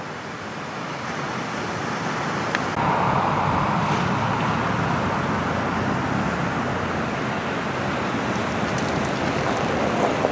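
A steady outdoor rushing noise that swells a little about three seconds in and then holds.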